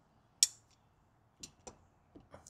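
One sharp click about half a second in, then two faint ticks near the end.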